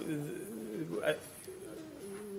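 Speech only: a man's hesitant, drawn-out "uh".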